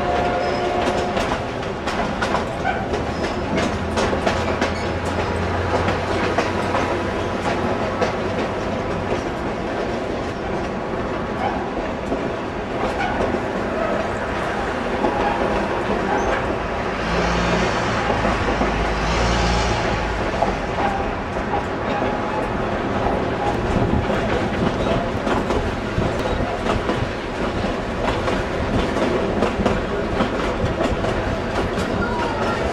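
Durango and Silverton narrow-gauge steam train running, heard from aboard the cars: a steady rumble and clatter of wheels on the rails. Two short hissing bursts come a little past the middle.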